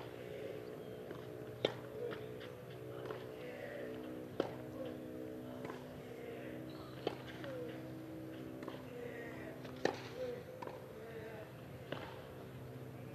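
Tennis ball struck back and forth by racquets in a baseline rally on a clay court: sharp hits about every two and a half to three seconds over a low crowd murmur.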